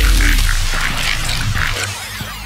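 Hardcore electronic dance music: a steady deep bass under short, evenly repeated mid-range stabs, easing slightly in loudness.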